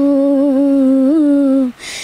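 A woman singing unaccompanied, holding one long steady note with a small lift partway, then a brief breathy hiss near the end.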